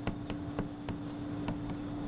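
Chalk writing on a chalkboard: a run of quick, irregular taps and short scrapes, about four or five a second, as characters are written. A steady low hum runs underneath.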